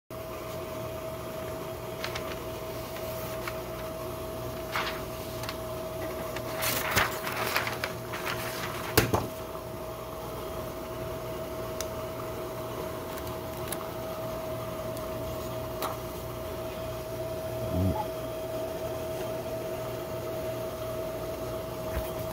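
A steady machine hum with one constant tone. Over it come rustling and handling noises about a third of the way in, a sharp click soon after, and a soft thump near the end.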